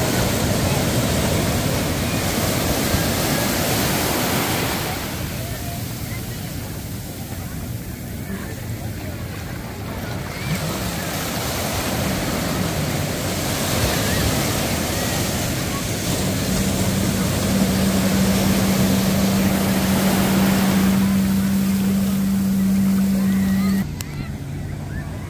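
Surf breaking and washing up the beach in repeated surges, with wind buffeting the microphone. In the last third a jet ski's engine hums steadily under the waves.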